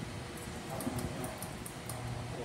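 Light, irregular clicks and ticks from a Hunter Derby ceiling fan's pull chain being handled, several through the stretch, over a steady low hum.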